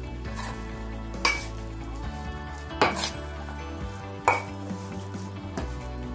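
Metal spoon stirring flour-coated baby corn in a stainless steel bowl: soft scraping with about five sharp clinks of the spoon against the bowl, some ringing briefly.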